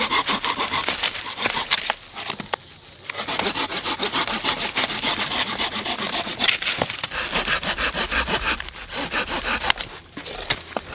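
Folding hand saw cutting through a dry dead branch, with quick, even back-and-forth strokes. A short pause about two seconds in, then steady sawing again.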